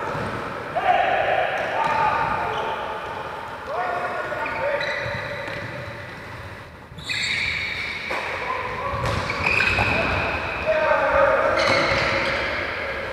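Players shouting and calling to each other during an indoor football game, echoing in a large sports hall, with several sharp thuds of the ball being kicked and bouncing on the wooden floor.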